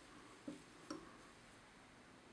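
Near silence: room tone, with two faint ticks about half a second apart as fingers handle the feather and tying thread at the fly-tying vise.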